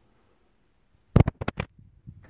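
Emptying lever of an Ewbank manual carpet sweeper pulled, its plastic dust-pan shutters on the underside snapping open one after the other: a quick run of sharp clicks about a second in.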